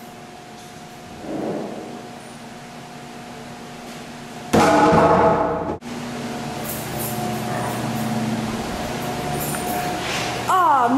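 A steady mechanical hum carrying two faint steady tones. About halfway through it is broken by a loud pitched sound lasting about a second, which stops abruptly.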